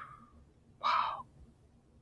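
A person's breathing: the end of a long sigh fades out at the start, then one short breath about a second in.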